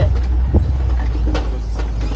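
Open-air safari truck running on the move: a steady low engine and road drone, with a couple of faint knocks about half a second and a second and a half in.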